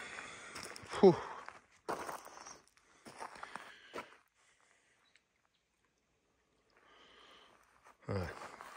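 Footsteps crunching on gravel and pebbles, a few steps in short bursts over the first half.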